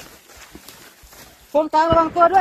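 Faint footsteps and rustling of people moving through forest undergrowth. About one and a half seconds in, a man shouts loudly, calling out to someone.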